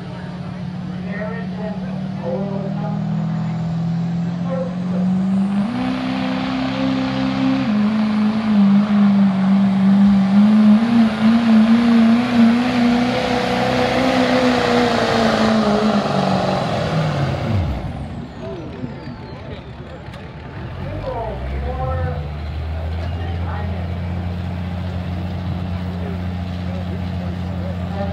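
Diesel pickup truck pulling a sled at full throttle. The engine climbs in pitch about five seconds in and runs hard and loud for about ten seconds. Its pitch then falls steeply and it drops off near eighteen seconds as the pull ends, and it settles to a low idle from about twenty-one seconds.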